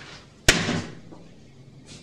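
A single sharp slam about half a second in, with a short echo fading after it.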